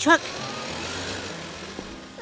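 Cartoon sound effect of a steady hiss from a truck's engine, slowly fading: the sign of a blown gasket letting out coolant.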